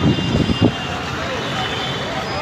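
Street noise with people's voices and traffic, with a few short loud bumps in the first second.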